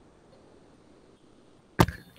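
Faint background hiss, then a sudden sharp knock near the end.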